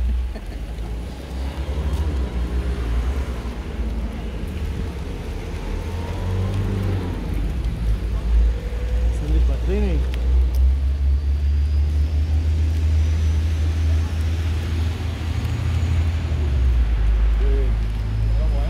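Outdoor street ambience while walking with a crowd: a steady low rumble on the microphone, with faint distant voices calling now and then.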